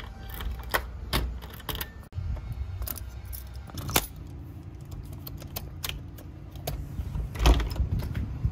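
Keys jangling and metal clicks as a key turns in a front-door deadbolt, then clicks and rattles from a Master Lock key lock box being handled. The loudest click comes about halfway through.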